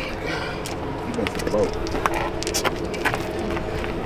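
Dice clicking and clattering on asphalt, a few sharp clicks with a cluster about two and a half seconds in, over quiet men's voices and a steady hum.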